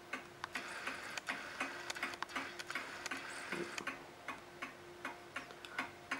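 A late-1920s Sessions Berkeley tambour mantel clock ticking steadily, its movement giving a regular run of sharp, even ticks.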